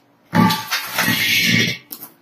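A metal gas cylinder being dragged and rolled across a concrete floor: a loud scraping rumble lasting about a second and a half, with uneven knocks underneath, then a short click.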